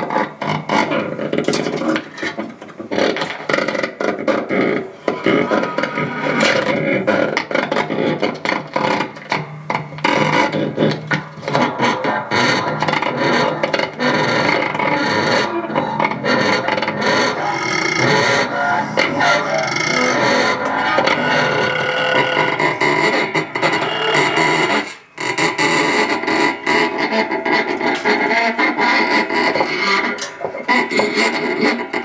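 Live improvised noise music from amplified objects and electronics, a dense, distorted, clattering and scraping texture with a brief break about 25 seconds in.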